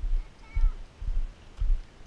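Footsteps jolting a hand-held or body-worn camera while walking on gravel: low thuds about twice a second. About half a second in, a toddler gives a brief high squeal.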